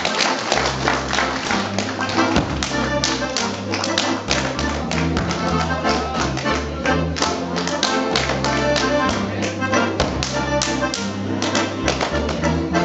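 Accordion playing an Alpine folk dance tune over steady bass notes, with many sharp slaps and stamps from a Schuhplattler dancer striking his thighs and shoe soles and stamping on the stage.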